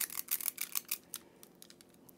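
A metal spring-loaded cookie scoop clicking and scraping as it releases dough onto a parchment-lined sheet pan: a quick run of small clicks over about the first second.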